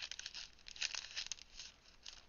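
Clear plastic bag of a Tim Holtz ephemera pack crinkling and die-cut paper pieces rustling as they are pulled out by hand, in short irregular spurts that die down near the end.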